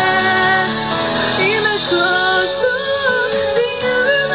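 A woman singing a ballad in Japanese over an instrumental backing track, holding long notes with a slight waver in pitch.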